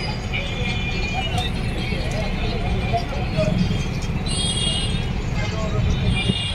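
Busy street ambience: a steady low traffic rumble with distant voices. About four seconds in, a brief high-pitched tone rises above it.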